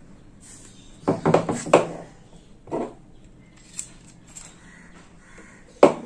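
Small metal fan-motor parts handled on a wooden table: a cluster of knocks and rattles about a second in, a couple of lighter clicks, and a sharp knock just before the end as a part is set down.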